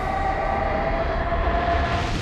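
A single long held tone from the music video's soundtrack that sinks slightly in pitch, over a low rumble.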